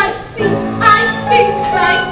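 A young voice singing a musical-theatre song over instrumental accompaniment that comes in about half a second in.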